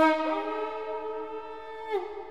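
Electronic violin, freely improvised: several sustained notes sounding together, one sliding up in pitch just after the start, then a bend down near the end as the sound fades.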